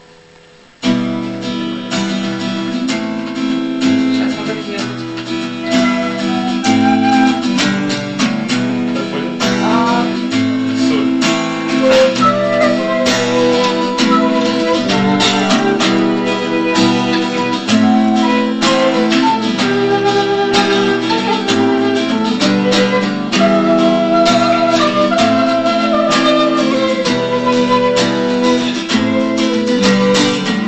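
An acoustic guitar plays chords, with a flute melody running over them, starting about a second in.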